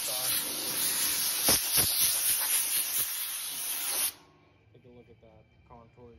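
Compressed-air blow gun blasting sanding dust off a sanded, body-filled car fender ahead of primer: a loud, steady hiss that cuts off suddenly about four seconds in. Faint voices follow.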